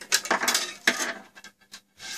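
Magnetic metal-mesh side fan filter of a Streacom F12C aluminium case being pulled off the panel: several sharp metallic clicks and rattles within the first second.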